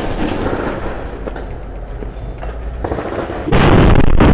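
Rumble of a booby-trap roadside bomb (IED) explosion dying away, with the noise of the blast rolling on and fading over about three seconds. A second sudden loud burst of noise comes near the end.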